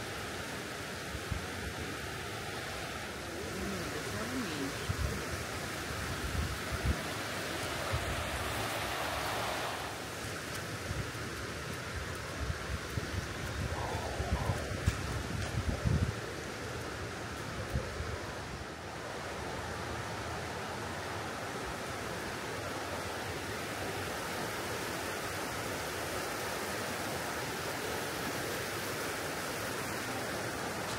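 Steady rushing of a shallow river running over a stony bed, with irregular low buffeting of wind on the microphone from about four to sixteen seconds in.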